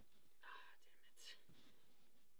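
Faint whispering, two short breathy phrases in near silence.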